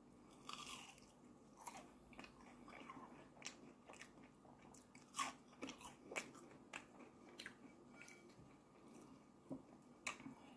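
Close-miked eating sounds: a crispy fried potato wedge bitten into and chewed, an irregular series of short crunches and wet chewing clicks, loudest about five and six seconds in.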